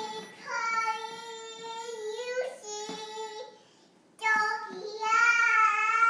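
A toddler girl singing in a high, thin voice, holding long drawn-out notes. Two sung phrases with a short break just past the middle.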